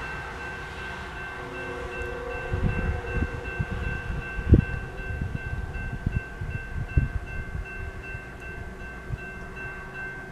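Railroad crossing bell ringing steadily as the crossing gates come down. A distant locomotive horn sounds briefly about two seconds in, and from about two and a half seconds on there is low, irregular rumbling with a few heavier thumps.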